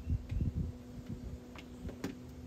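Muffled low thumps and rubbing, cloth brushing against the microphone, strongest in the first half second and fainter after that, over a faint steady hum.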